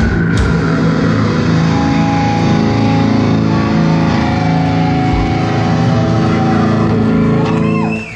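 Live heavy metal band's distorted electric guitars holding a final chord that rings out after a last drum hit about half a second in; the sound cuts off at the very end.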